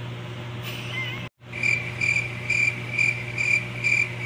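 A steady low room hum, then after a sharp cut about a second in, a cricket chirping about twice a second: the stock 'crickets' sound effect used to mark an awkward silence.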